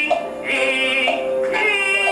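Teochew opera music: long held sung notes over traditional instrumental accompaniment, with a brief break in the line about a quarter second in before it resumes.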